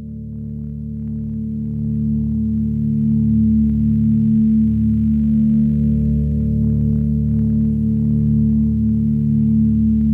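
Ambient drone opening a progressive death metal track: a low sustained chord of steady tones swells in over about the first three seconds, then holds level.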